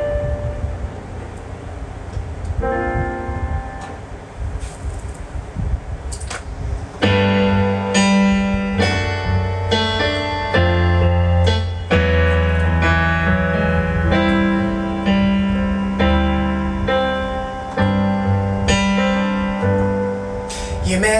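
Roland JUNO-DS keyboard played with a piano sound in an instrumental passage: sparse, softer chords at first, then about seven seconds in a louder, fuller passage of chords over a low bass part.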